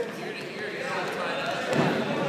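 Spectators' and coaches' voices calling out in a gym during a wrestling bout, with a thud near the end.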